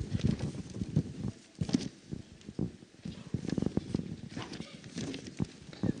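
Handheld microphone handling noise: quiet, irregular knocks and rustles, with faint voices in the background.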